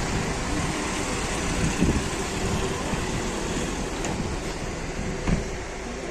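Outdoor noise of wind buffeting the microphone over the engine and road noise of a van driving away, with two brief knocks about four and five seconds in.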